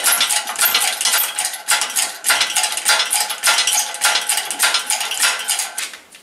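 Busy, irregular metallic clinking and rattling of steel parts (shaft, ball bearing and pulley) being handled at a hydraulic press; it stops suddenly near the end.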